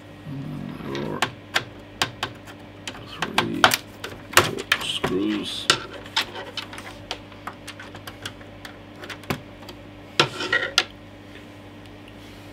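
Irregular clicks and taps of a screwdriver and small screws against the plastic bottom case of an Amiga 500 Plus as the screws are taken out and handled.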